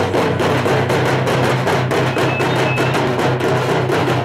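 Several dappu frame drums beaten fast and loud by hand in a dense, driving rhythm.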